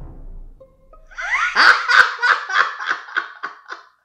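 A man laughing hard, a quick run of repeated 'ha' bursts starting about a second in and fading near the end.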